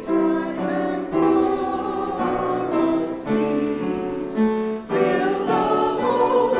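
A group of voices singing an Advent hymn together in long, held notes that move step by step, at a steady full volume.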